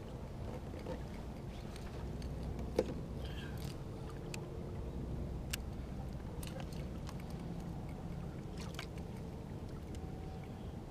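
Steady low hum of a kayak sitting on the water, with scattered small clicks and knocks from fishing gear being handled. One sharper click comes about three seconds in.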